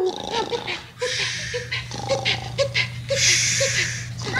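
A puppeteer's voice doing a sleeping wolf puppet's snoring: two long hissing breaths, with strings of short, low snorts between them.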